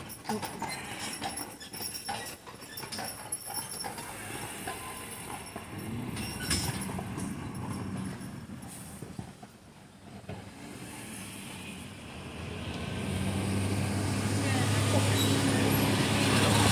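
Horse hooves clip-clopping on the street in the first part, then a motor vehicle's engine hum that grows steadily louder over the last few seconds and is the loudest sound.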